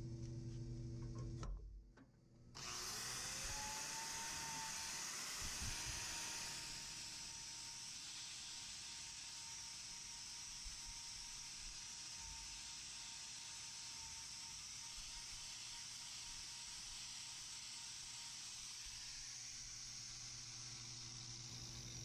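Angle grinder with a hoof-trimming wheel starting up about two and a half seconds in, its whine rising in pitch and then holding steady as it grinds down old sole horn on a cow's claw. It is a little louder for the first few seconds, and before it starts there is a steady low hum.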